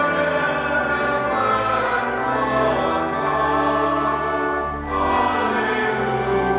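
A congregation singing a hymn in held chords with pipe organ accompaniment, with a brief break between lines about five seconds in.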